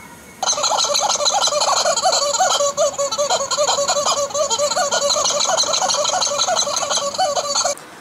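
An edited-in sound effect of rapid, dense warbling calls that switches on abruptly about half a second in and cuts off abruptly just before the end.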